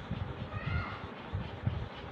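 Chalk writing on a chalkboard: a run of low taps and scrapes as the letters are written, with a faint, short, high-pitched cry about half a second in.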